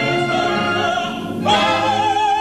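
Operatic singing with orchestra. A new held note with a wide vibrato enters loudly about one and a half seconds in.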